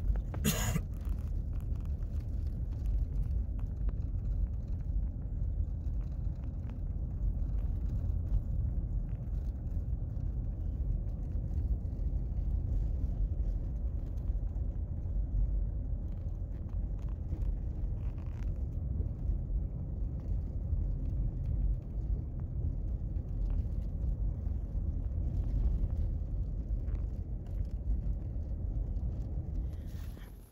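Wind buffeting the microphone outdoors: a steady low rumble throughout, with one short knock about half a second in.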